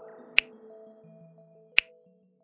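Two sharp mouse-click sound effects, about half a second in and near the end, over soft background music.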